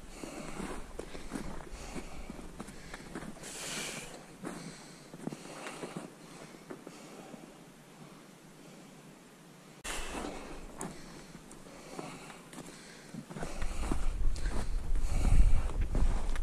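Footsteps through fresh, fluffy snow among brush, with branches and twigs brushing past, louder at times. A low rumble joins near the end.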